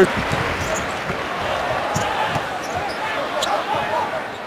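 Basketball being dribbled on a hardwood court, a few irregular knocks, under steady arena crowd noise.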